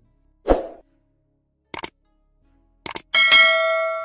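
Subscribe-button animation sound effects: a short thump about half a second in, two quick clicks, then a bell chime about three seconds in that rings on and slowly fades.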